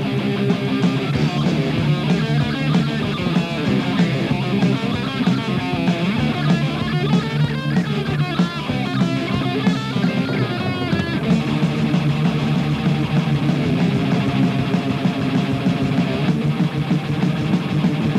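Heavy metal band playing live: distorted electric guitars over bass and drums, with a guitar line wavering in pitch in the middle.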